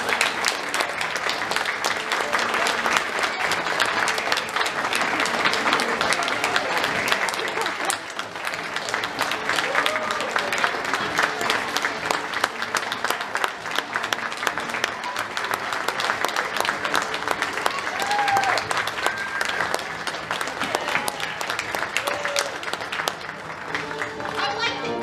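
Audience applauding steadily, with a few short cheers and whoops from the crowd.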